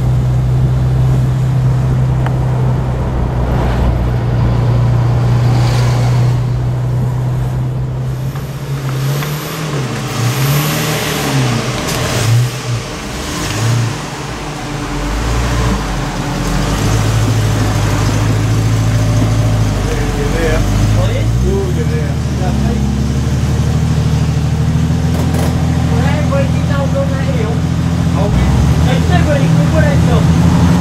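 Jaguar E-Type engine running steadily at low revs, then rising and falling in pitch several times between about nine and fifteen seconds in as the car slows and manoeuvres, before settling to a steady idle.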